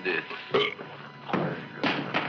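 Belching from the man-eating plant Audrey Jr., about three short, loud burps, the sign that it has just swallowed a victim.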